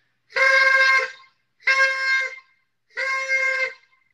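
Paper party horn blown three times in short, steady, one-pitch toots, the first the longest and loudest.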